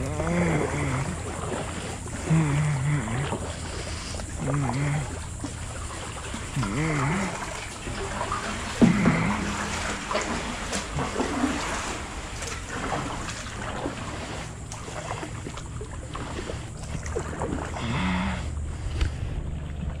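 Kayak paddle strokes: the blade splashing into the water and water trickling and dripping off it, with faint voices now and then.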